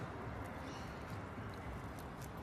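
Steady, fairly quiet background noise with a low hum underneath and a few faint ticks.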